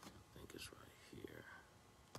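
Near silence with faint whispered, muttered speech.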